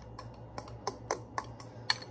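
A small spoon stirring sauce in a drinking glass, clicking lightly against the glass about half a dozen times at uneven intervals, the sharpest click near the end.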